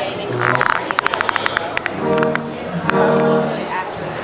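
Amplified electric guitars being tried out before a set: a quick run of short picked clicks, then two held chords ringing out about two seconds in, over the murmur of a seated crowd.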